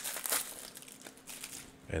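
Clear plastic wrapper of a trading-card booster pack crinkling as hands peel it off the card stack, in a few soft, scattered crackles.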